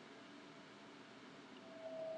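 Near silence: faint room hiss in a pause between spoken sentences.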